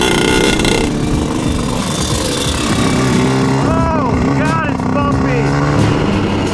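Two-stroke shifter kart engines running, with three quick revs rising and falling in pitch in the second half.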